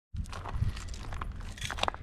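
Footsteps crunching on crushed-shell gravel, a run of short, uneven crunches over a steady low rumble.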